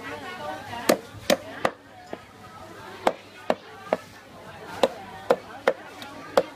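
Knife chopping into a whole fish on a round wooden chopping block: about ten sharp chops that come unevenly, in groups of two or three.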